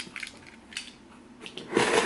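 Snap-off utility knife cutting along the packing tape of a cardboard box: a few small clicks and scrapes, then a louder scraping rasp of about half a second near the end as the blade runs through the tape seam.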